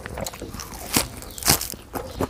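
Close-miked crunching and chewing of a mouthful of crisp squid salad with fresh leafy greens, with two louder crunches about one and one and a half seconds in.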